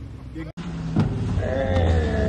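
A drawn-out, voice-like sound that falls steadily in pitch, starting about one and a half seconds in, over a steady low rumble; the sound cuts out for an instant about half a second in.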